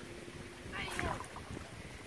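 Quiet lakeside ambience: light wind on the microphone, with a faint distant voice about a second in.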